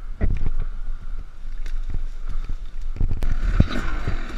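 Brush and branches scraping and snapping against a dirt bike and its onboard camera as it runs into a tree and falls into the undergrowth: irregular knocks and rustles over a low rumble.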